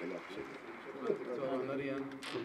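Indistinct speech from a low voice, too faint or unclear to make out.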